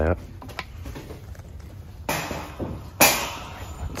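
Wooden cheese slicer board with a metal wire arm being set down in a wire shopping cart: a brief rustle about two seconds in, then a sharp clatter about three seconds in that rings out briefly.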